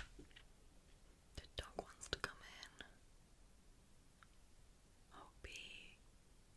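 A woman whispering quietly, with a cluster of short sharp clicks between about one and a half and three seconds in and a breathy whisper near the end.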